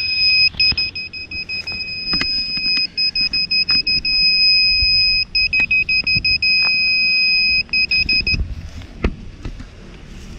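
Lost-model buzzer on a crashed 5-inch FPV quadcopter beeping, the alarm that helps find a downed quad: a loud, shrill tone in quick strings of short beeps broken by longer held beeps, stopping about eight seconds in. A few knocks from the quad being handled.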